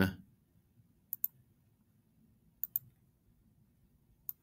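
Computer mouse clicking: two quick double-clicks about a second and a half apart, over a faint low background hum.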